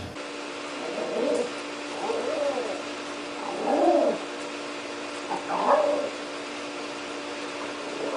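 A pet's short calls that rise and fall in pitch, four times over a few seconds, with a steady hum underneath.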